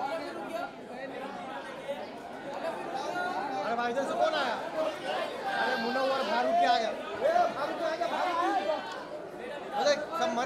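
Chatter of many people talking at once in a large room, overlapping voices with no single clear speaker, busiest in the middle.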